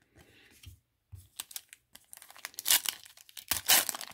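Foil trading-card pack being crinkled and torn open by hand. It crackles in irregular bursts that get louder over the last two seconds.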